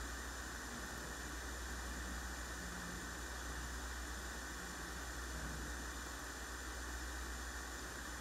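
Quiet steady background hiss with a low electrical hum beneath it: room and sound-system noise, with no distinct event.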